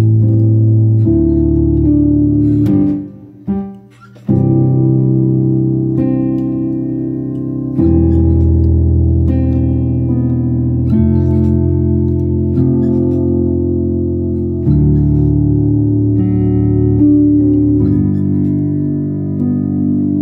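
Piano played in slow, held chords that change every second or two, with a brief drop in the sound about three to four seconds in.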